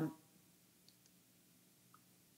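The tail of a spoken "um", then near silence in a hall broken by two faint clicks about a second apart.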